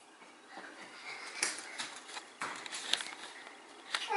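Faint, scattered light taps and knocks: small children's footsteps on a tile floor.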